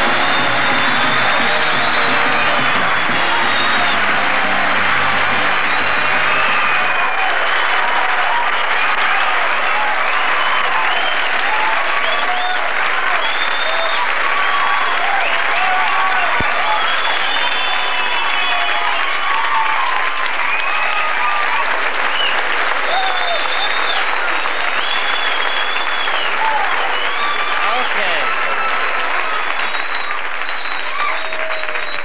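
A large theatre audience applauding and cheering a comedian's entrance, dense clapping with voices calling out over it. Band walk-on music plays under the ovation and stops about seven seconds in.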